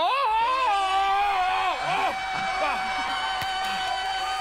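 A man's Tarzan-style yell: a cry that rises sharply, then is held on one long note, with other voices from the audience over it.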